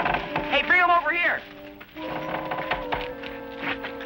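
Dramatic orchestral background score with held, sustained notes. About half a second in, a brief high, wavering cry rises over it and is the loudest sound.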